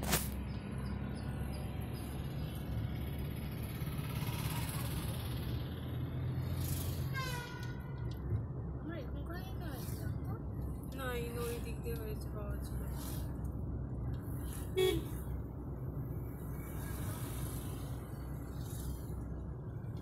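Steady road and engine noise inside a moving car's cabin, with a short vehicle horn toot about fifteen seconds in.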